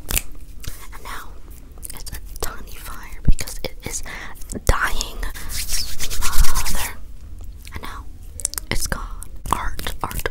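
Fast hand sounds close to a microphone: quick clicks and taps from fingers, with palms rubbed together briskly for a couple of seconds around the middle.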